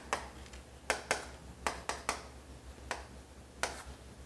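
Chalk striking and scraping against a chalkboard as short lines and small shapes are drawn: a series of short, sharp taps, often in quick pairs.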